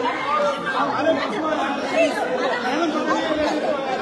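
Many people talking over one another at once, a continuous jumble of overlapping voices in a packed crowd.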